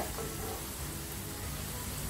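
Jalebis frying in hot oil in a pan: a steady sizzle, with faint background music underneath.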